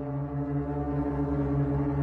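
Deep, steady horn-like drone from an ominous soundtrack, slowly swelling in loudness.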